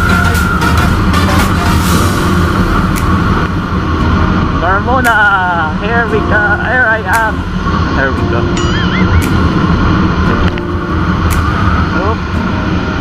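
Motor scooter running at road speed on wet asphalt, its engine and tire noise mixed with steady wind noise on the camera microphone. A voice sings or hums a short melodic line a few seconds in.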